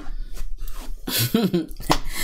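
A man coughing and clearing his throat in a few short, separate bursts.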